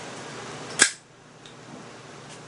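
Butane pipe lighter hissing steadily, cut off by a single sharp click just under a second in, after which the hiss falls away.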